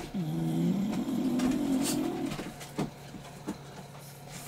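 A bulldog puppy's low, drawn-out moaning vocalization lasting about two seconds, dipping in pitch at the start and then holding steady. A few faint clicks follow.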